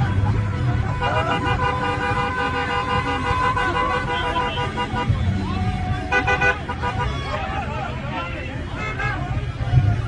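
Car horns honking: one long blast of several pitches at once, held for about four seconds, then a short honk about six seconds in, over road and engine noise from moving cars.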